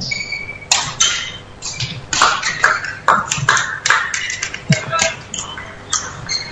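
A badminton rally: a quick run of sharp racket strikes on the shuttlecock mixed with court shoes squeaking and stamping on the floor.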